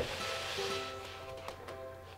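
Light background music with steady held notes. In the first second a soft rushing scrape, a small toy train engine pushed along a paper activity-book page.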